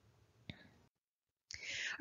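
Near silence in a voice-over pause: a faint click about half a second in, a moment of dead silence, then a speaker's soft in-breath near the end.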